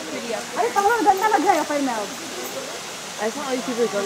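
People's voices talking in two short stretches, over a steady background hiss.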